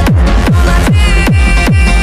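Techno track: a deep kick drum falling in pitch on every beat, just over two beats a second, under sustained synth lines.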